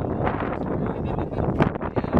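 Wind buffeting the microphone, a dense, uneven rumble.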